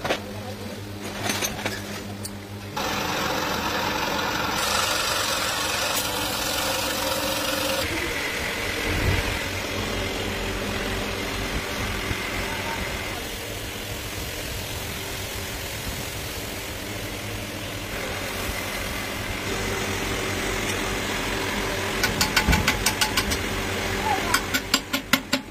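Steady running of a motor-driven machine in an aluminium-casting workshop, with a low hum under a noisy rush. Its level jumps abruptly several times. Near the end come a quick series of sharp metal taps, about four a second.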